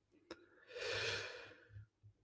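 A man's soft breath of about a second, drawn in during a pause in speech, after a short mouth click.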